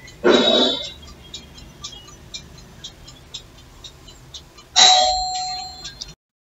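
Two loud chime-like sounds. The first is short and comes just after the start. The second, near the end, rings on with a held tone and fades over about a second.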